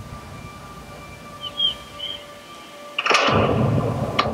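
Soundtrack of an Apple TV+ video playing through an Echo Studio speaker: music with held tones over a low rumble and a few short high notes, then a loud rushing swell about three seconds in.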